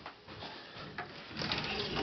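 Wooden closet door being opened: light clicks, one about a second in, then a brief rubbing, sliding sound as the door swings open.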